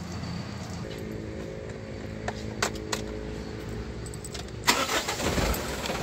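Suzuki's engine idling steadily, left running while the brakes are bled, with a few light clicks in the middle. About four and a half seconds in, a louder burst of rustling noise.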